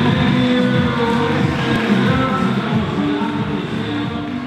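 The close of a recorded country song, its last chords held at full level and mixed with crowd noise, until the sound fades out shortly afterwards.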